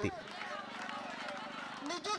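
Faint murmur of many overlapping voices from a large seated crowd, with a steady low hum underneath.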